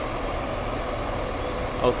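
Steady vehicle engine hum with a low rumble and no change in pace.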